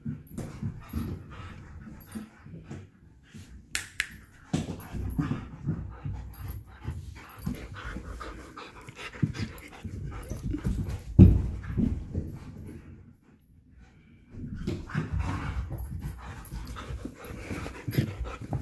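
A husky and a German shepherd panting and moving about at play close to the microphone, with occasional knocks and bumps and a brief lull about two-thirds of the way through.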